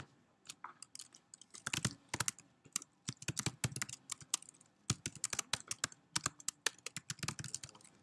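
Typing on a computer keyboard: a quick, irregular run of keystrokes entering a line of Python code.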